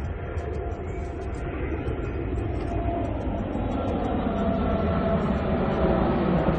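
Jet airliner passing low overhead: a deep, steady rumble that grows steadily louder.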